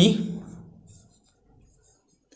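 A man's drawn-out spoken word trails off at the start. Then a marker pen writes on a whiteboard in faint, short scratching strokes.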